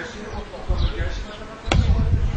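Dull thumps, the loudest a sharp knock near the end, with faint voices in the background.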